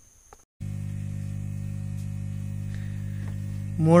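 Steady low electrical mains hum that cuts in abruptly about half a second in, after a brief near silence, and holds level throughout. A man's voice starts right at the end.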